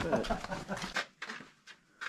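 Wordless human voice sounds, loudest in about the first second, followed by a few faint short clicks.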